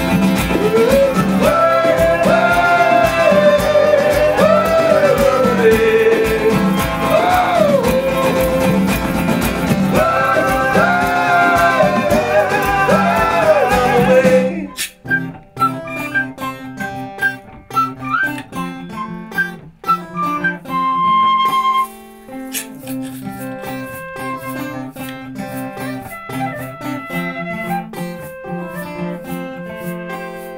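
Live acoustic band music: acoustic guitar, hand drums and shaker under wavering wordless vocal lines. About halfway through the texture drops suddenly to a sparser passage of guitar, light percussion and high whistle notes.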